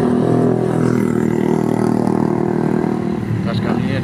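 Motorcycle and motor-scooter engines running along the road, a steady engine hum with one scooter coming close near the end.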